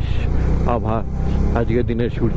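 A Bajaj Dominar 400's single-cylinder engine running steadily under way, heard from the rider's seat as a low drone, with a man talking over it in short phrases.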